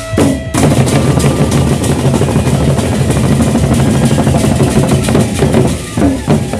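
Gendang beleq ensemble: several large Sasak double-headed barrel drums beaten fast and loud with sticks, coming in about half a second in and running densely, with a brief dip just before the end.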